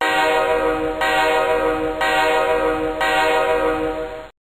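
A loud, steady, horn-like blast of several tones held together, repeated in one-second loops. It starts abruptly and cuts off suddenly.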